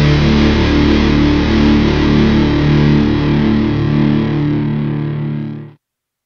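A distorted electric guitar and bass chord rings out as a hardcore punk song's final hit, fading slightly before cutting off suddenly near the end.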